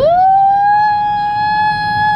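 A person's high-pitched 'woo' whoop that slides up at the start and is then held on one steady note.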